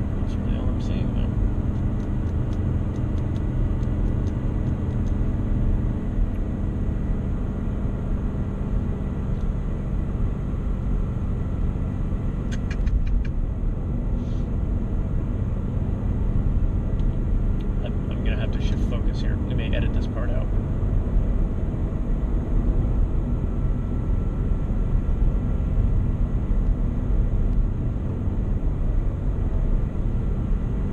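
Car cabin noise while driving: a steady engine drone and tyre rumble heard from inside the car, the engine note easing about six seconds in.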